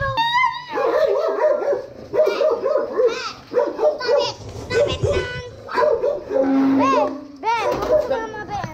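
Small dogs barking over and over in quick, yappy calls, with a few higher yelps near the end.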